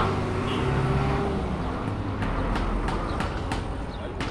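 Building-site background noise: a steady low engine-like rumble, joined about halfway through by light, evenly spaced knocks, about three a second.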